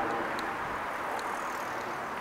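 Steady noise of a passing vehicle slowly fading away, with a few faint ticks.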